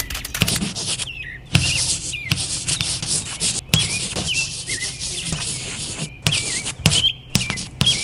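Chalk scraping across a chalkboard in a series of drawing strokes: a scratchy rasp broken by short pauses, with small taps as the chalk meets the board.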